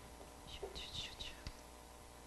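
Faint whispering from a person, in a few short breaths of sound, with one soft click about one and a half seconds in.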